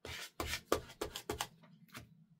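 Paper being rubbed with a small handheld tool in about half a dozen quick back-and-forth strokes across a sketchbook page, pressing down a pasted paper scrap. Fainter scuffs follow near the end.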